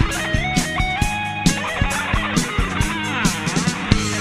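Bangla rock band instrumental passage: an electric lead guitar plays a melody that slides up between held notes, over drums and bass guitar. About three seconds in, the lead swoops down in pitch and back up.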